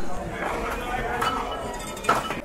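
A light metallic clink from a stainless-steel plate as fish pieces and a utensil are handled on it, sounding once sharply about a second in, over a murmur of voices.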